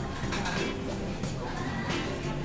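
Busy restaurant ambience: background music and the chatter of diners, with light clatter of tableware.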